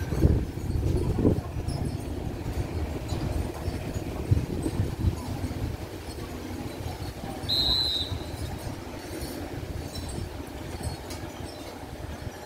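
Special express train 31 rumbling low as it pulls away down the line, the sound slowly fading. A brief high chirp comes about seven and a half seconds in.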